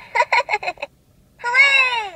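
Little Bear talking plush toy's recorded voice through its small speaker: a quick run of short syllables, then one long call that falls in pitch as it fades.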